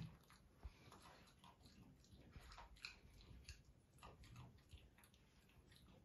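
A macaque chewing food, heard faintly as irregular small clicks and crunches.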